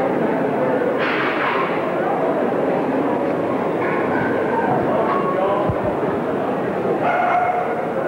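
Crowd chatter in a hall, with Staffordshire Bull Terriers barking and yipping among the voices.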